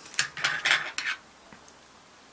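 Metal fly-tying tools being handled: a quick run of short clicks and clinks in the first second, then quiet.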